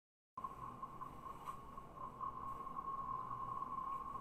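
A steady, unwavering electronic tone over faint hiss, cutting in suddenly a moment in after dead silence.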